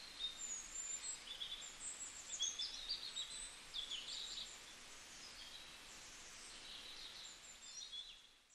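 Birds chirping against a faint, steady hiss of open-air ambience, with many short high calls over the first half and a few more near the end.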